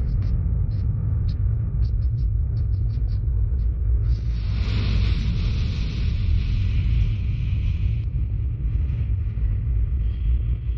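Documentary sound design under UFO footage: a loud, steady, deep rumble, with faint high ticks over the first few seconds and a hiss that swells in about four seconds in and cuts off around eight seconds.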